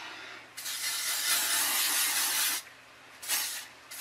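Aerosol can of L'Oréal Paris Studio Line Fix & Style anti-frizz fixing spray hissing onto hair: one long burst of about two seconds, then a short burst near the end.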